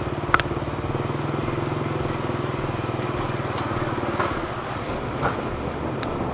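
Small motorbike engine running steadily under the rider, with a fast even pulse, its note dropping away about four and a half seconds in. A single sharp click comes just after the start.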